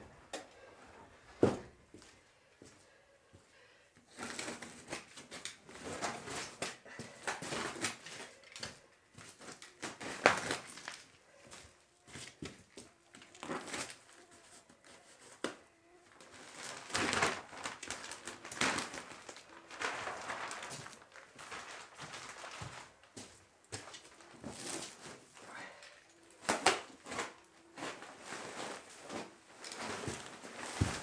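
Plastic-wrapped bale of wood shavings being handled and opened: the plastic wrapping crinkles and tears and loose shavings rustle in irregular bursts. A sharp knock about a second and a half in.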